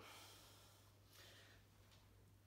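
Near silence: a man's faint breathing while doing an ab wheel rollout, with one soft breath about a second in over a steady low hum.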